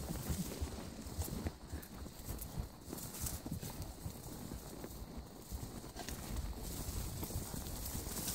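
Horses' hooves walking on a dirt and rocky mountain trail: an irregular clip-clop of hoofbeats with an occasional sharp click of hoof on stone.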